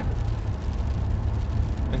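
Steady low rumble of a car heard from inside its cabin, with an even hiss over it.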